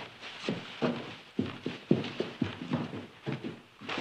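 Footsteps on a hard floor: a quick, uneven run of about three steps a second.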